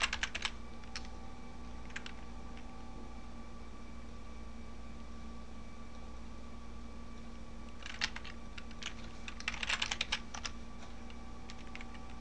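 Computer keyboard typing in short bursts: a few keystrokes at the start, a single one about two seconds in, then a quick run of keystrokes from about eight to ten and a half seconds in, over a steady faint hum.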